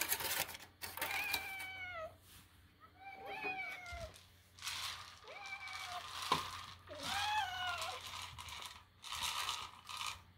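House cats meowing over and over, four or five drawn-out calls that each fall in pitch: they are begging for food after hearing a can's pull tab. A single sharp click about six seconds in.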